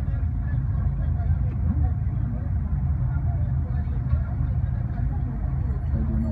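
Steady low rumble of idling cars and minibus taxis waiting at a red light, with indistinct voices mixed in.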